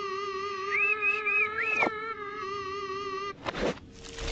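Cartoon cat's long, held wail with a slightly wavering pitch, with a few short high chirps over it about a second in. It breaks off near the end into a brief whoosh.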